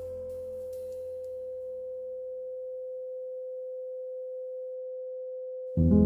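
A steady, pure sine-wave 'frequency' tone, mid-pitched and unwavering. Soft music fades out under it over the first two seconds, and piano music starts again loudly just before the end.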